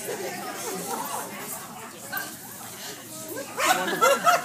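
People chatting in a large hall, with a dog barking among the voices and a louder burst of sound near the end.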